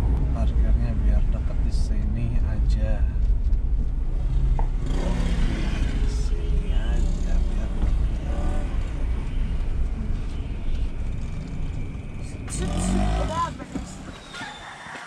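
Road and engine noise inside the cabin of a moving car: a steady low rumble, with faint voices at times. The rumble stops abruptly near the end.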